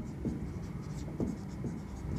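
Marker pen writing on a whiteboard: a run of short, faint scratchy strokes as letters are formed.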